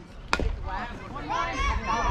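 A softball bat strikes the ball with a sharp crack about a third of a second in, and then many voices of spectators and players shout and cheer, getting louder.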